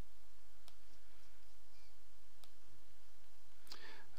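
Two faint computer mouse clicks, one under a second in and one just past halfway, over a steady low background hum.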